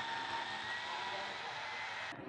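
Cordless drill running steadily with an even high whine.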